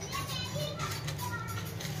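Children's voices in the background, faintly talking and playing.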